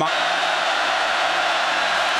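Large stadium crowd making a loud, steady roar. It is the home crowd's noise as the visiting offense lines up on third down.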